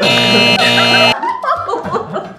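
A loud musical sound effect, one steady chord held for about a second and cut off abruptly, followed by several people laughing.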